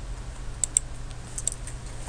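A few sharp clicks from a computer keyboard and mouse, in two little groups under a second apart, over a steady low hum.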